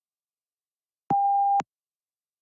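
A single electronic beep: one steady mid-pitched tone about half a second long that starts and stops abruptly about a second in. It is the cue that voice recording of the spoken answer is starting.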